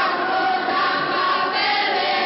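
A group of children singing a folk song together in unison, holding long notes.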